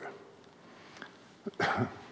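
Quiet hall room tone, then near the end a short, loud burst of a man's laugh.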